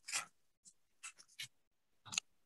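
A few short, faint scratchy noises close to the microphone, the loudest right at the start and smaller ones about a second in.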